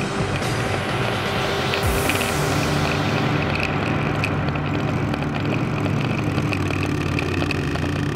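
Background music mixed with the sound of motorcycle engines running as a line of bikes rides past, one engine note dropping in pitch about two seconds in.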